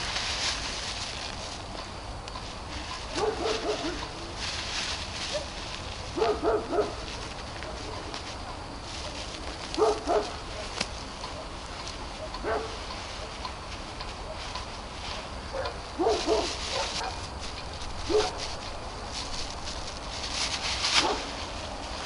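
Dogs barking some way off, one short bark every two to four seconds, over a steady high chirring of crickets.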